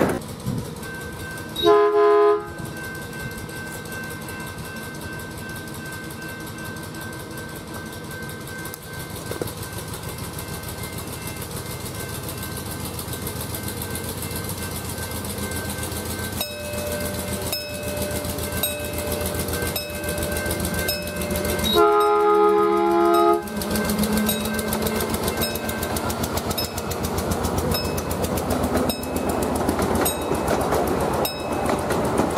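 Miniature railroad train running on its track with rhythmic clicking from the wheels. Its horn, several tones sounding at once, gives a short blast about two seconds in and a longer blast around twenty-two seconds in.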